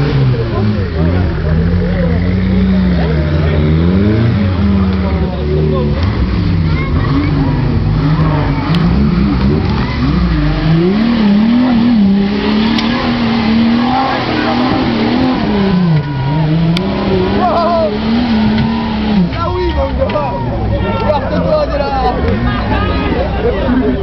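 Off-road 4x4's engine revving hard as it climbs a steep muddy slope, its note rising and falling again and again as the driver works the throttle, then dropping away about nineteen seconds in. Spectators' voices come and go over it.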